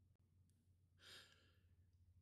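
Near silence, with one faint breath drawn about a second in.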